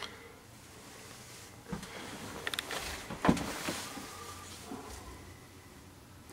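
Hands working on hoses and plumbing fittings inside a cabinet under a sink: a few scattered clicks and rustling, with one sharper knock a little past three seconds.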